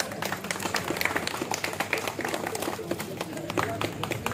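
Audience clapping in uneven, scattered claps, with voices talking underneath.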